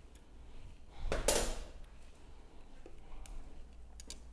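Spoon scraping against a metal stockpot, once for about half a second about a second in, then a few faint clicks of utensil handling, as excess salsa is taken out of an overfilled canning jar.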